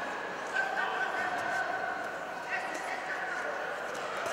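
Voices calling out in a large hall, with a few drawn-out high-pitched calls over a background murmur.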